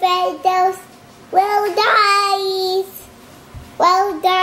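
A toddler girl singing a made-up song, with the words 'well guys, watching my videos'. She sings short phrases of drawn-out notes, a longer phrase in the middle, with pauses between them.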